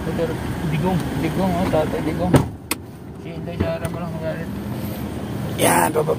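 Inside a parked pickup's cabin with the engine idling, a car door thuds shut about two and a half seconds in and the street noise goes muffled. A few small clicks follow, and a loud rush of outside noise comes in near the end.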